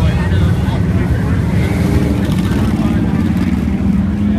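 Several motorcycle engines rumbling as bikes ride along a crowded street, one engine note climbing briefly around the middle, with voices of the crowd mixed in.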